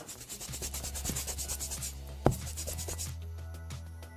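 Scratchy brush-stroke sound effect, a rapid run of rasping strokes lasting about three seconds, over background music with a low bass note; a sharp hit falls a little past two seconds in, and the music carries on after the scratching stops.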